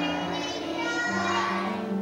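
A group of young children singing together with piano accompaniment, with notes held steadily.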